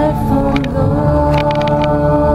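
Live worship song: several singers with instrumental accompaniment, holding long notes.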